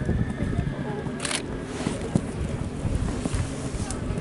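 Wind buffeting the microphone, with a single short hiss about a second in.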